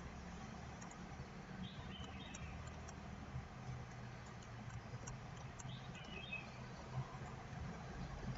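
Quiet room tone with a steady low hum, a few faint computer-mouse clicks, and two faint high chirps, one about two seconds in and one about six seconds in.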